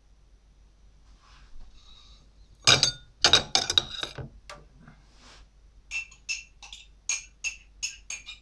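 Kitchenware clattering loudly for about a second and a half, about three seconds in. Later a regular clinking of a spoon against a mug follows, about three clinks a second, as in stirring.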